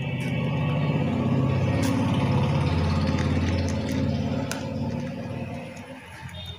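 A low engine rumble that swells to its loudest in the middle and then fades away, with a couple of light clicks over it.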